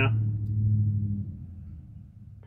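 A steady low hum that fades out a little over a second in, with the last syllable of a man's speech at the very start.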